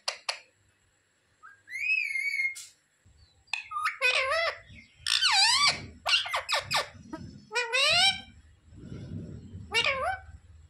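Ringneck parakeet calling: first a rising whistle that levels off, then from about three and a half seconds in a rapid run of high, squawky, speech-like calls that bend up and down in pitch. One more call comes near the end.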